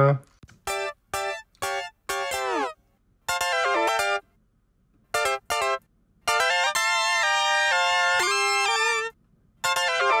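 Isolated high synthesizer part from a disco mix playing short chord stabs with gaps between them, a falling pitch swoop about two and a half seconds in, then longer held chords from about six seconds in. It is playing through an EQ that boosts the low end and mids.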